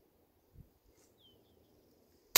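Near silence in the open air, with a faint low bump about half a second in and a brief, faint bird chirp, falling in pitch, a little after a second in.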